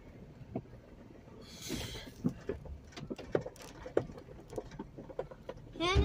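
Inside the cab of a 2014 Jeep Wrangler Unlimited crawling slowly over a rutted dirt trail: a low engine rumble under scattered knocks and creaks from the body and suspension, with a brief scraping rush about two seconds in.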